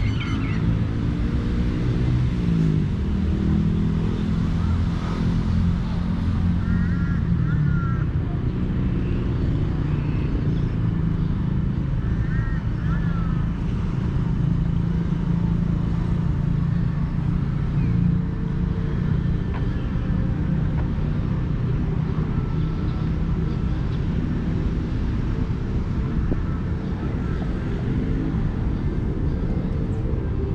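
Steady low engine drone of motor traffic running through the whole stretch. A bird chirps briefly twice, about a third of the way in and again a few seconds later.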